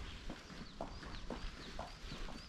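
A small bird chirping repeatedly, short high calls about three a second, over footsteps on a paved street.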